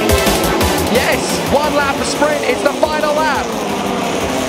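Electronic music with a fast drum beat fades out about a second in, giving way to broadcast race sound: touring car engines with rising and falling notes under a commentator's voice.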